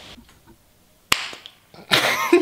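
A single sharp smack about a second in, followed near the end by a person's voice starting up.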